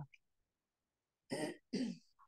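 Near silence, then a woman clearing her throat in two short bursts near the end.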